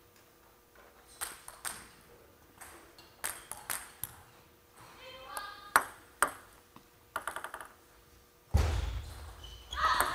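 Plastic table tennis ball bouncing, with sharp single ticks off the table and racket, then a quick rattle of bounces about seven seconds in. A sudden rush of noise comes in near the end.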